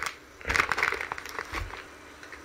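Foil booster-pack wrapper of a Japanese Pokémon card pack crinkling and crackling as it is handled and opened, in a rustling burst of about a second starting about half a second in, then fainter.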